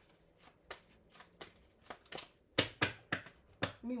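A hand handling a deck of tarot cards: a string of light, sharp clicks and snaps, sparse at first, then louder and closer together in the second half.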